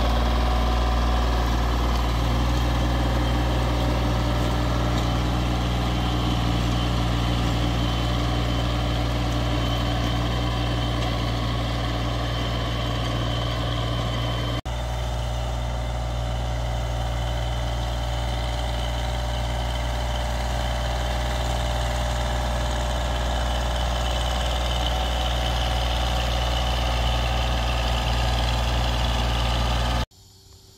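Compact Kubota diesel tractor running steadily with a low, even engine hum, broken by a momentary dropout about halfway through.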